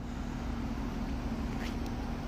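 Steady outdoor background noise: a low rumble with a faint, steady hum.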